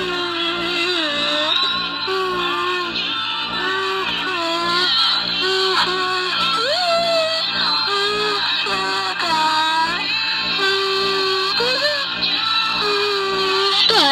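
Toy karaoke microphone playing a tune with a steady beat, with a toddler singing into it in short, wavering phrases.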